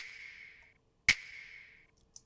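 A soloed hip-hop clap sample hits twice, about a second apart, each hit trailing off over most of a second. It carries an EQ boost in the upper mids that makes it more present and in your face.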